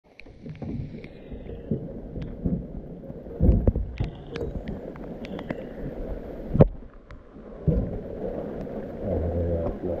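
Handling noise in a small boat: irregular knocks and clatter of a plastic box and tub as a net with a caught fish is brought over the water-filled tub. The loudest knocks come about three and a half and six and a half seconds in.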